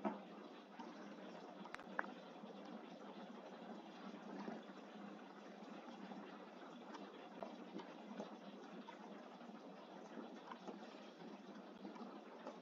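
Faint, steady background hiss of room noise with a single click about two seconds in.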